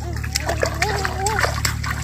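Bare feet splashing step by step through shallow muddy water, with a child's voice giving a drawn-out, wavering call for about a second in the middle.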